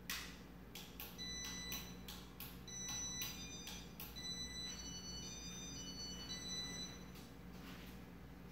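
Casablanca Zephyr ceiling fan starting up from standstill: a run of sharp clicks, about three a second, over the first four seconds. Faint high whining tones come and go and change pitch as the blades come up to speed.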